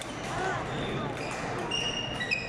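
Badminton doubles rally: a racket strikes the shuttlecock sharply right at the start, and court shoes squeak briefly on the floor near the end, over the chatter of spectators.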